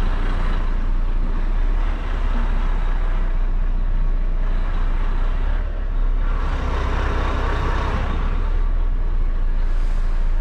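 Diesel engine of a Volvo lorry running at low speed, heard from inside the cab while the truck creeps forward, with a steady low hum. The engine noise swells for a couple of seconds around six to eight seconds in.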